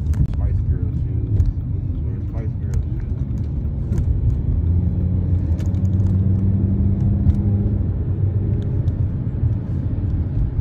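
Inside a moving car: a steady low rumble of engine and road noise while driving. A steadier low hum joins about five seconds in and fades about three seconds later.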